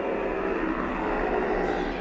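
A rushing, wind-like whoosh sound effect that builds, holds and fades near the end. In this film it is the sound of the unseen evil force sweeping through the woods.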